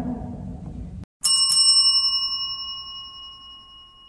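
Faint room tone that cuts off abruptly about a second in, then a single bright bell-like chime struck once and left ringing, fading away slowly over the next few seconds.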